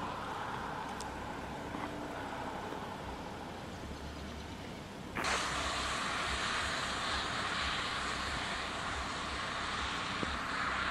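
Steady traffic noise, changing abruptly to a louder, brighter hiss about five seconds in.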